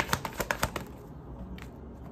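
Tarot deck being shuffled by hand, the cards making a quick run of papery clicks several times a second that stops about a second in.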